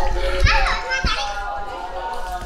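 Children's voices, talking and calling out at play, with one high cry that rises and falls about half a second in.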